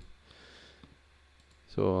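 Faint computer mouse clicks against quiet room tone, followed near the end by a single spoken word.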